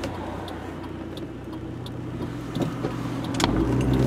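Steady engine and road noise inside a moving car's cabin, a low hum, with a few faint clicks.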